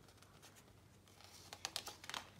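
Faint quick clicks and light rustle of fingers catching the edge of a hardback picture book's page to turn it, a brief cluster about a second and a half in.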